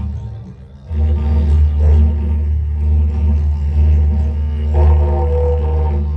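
A didgeridoo playing a steady low drone that drops away briefly in the first second and comes back, with brighter overtone calls rising over it about two seconds in and again near five seconds.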